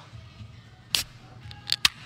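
Aluminium beer cans being cracked open: a short sharp pop with a hiss about a second in, then two quick sharp clicks near the end.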